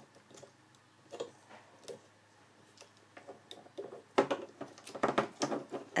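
A metal loom hook clicking against clear plastic loom pegs as rubber loom bands are hooked and stretched; scattered light clicks and taps, coming closer together near the end.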